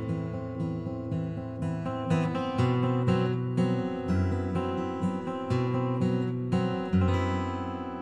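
Acoustic guitar playing an instrumental passage of a slow ballad, picked notes ringing over held bass notes, with no singing.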